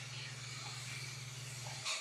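A steady low hum with faint hiss, and near the end a short nasal sniff as a glass of beer is smelled.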